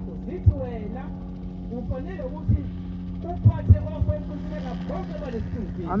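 A voice speaking faintly in a preaching cadence over a steady low hum, with a few short low thumps. At the very end a congregation answers with a loud "Amen".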